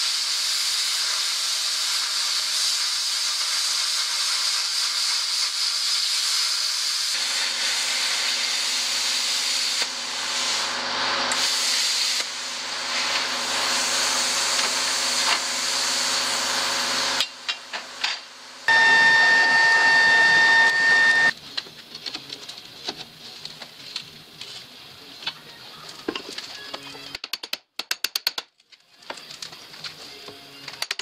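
Plasma cutter cutting a steel flat bar: a loud steady hiss of the arc and air for about seventeen seconds, with a lower hum joining about seven seconds in. It stops abruptly, and a loud steady whistling tone follows for a couple of seconds, then quieter scattered clatter of handling.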